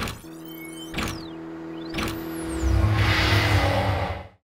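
Electronic logo intro sting: three sharp hits about a second apart, with whooshing sweeps gliding down in pitch over a held tone, then swelling into a louder low rumble near the end.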